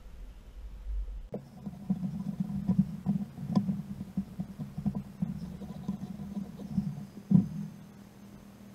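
Close handling sounds from fly tying at the vise: a steady low rubbing with small irregular clicks starting about a second in, as thread is handled and wrapped on the hook, and one sharper knock near the end.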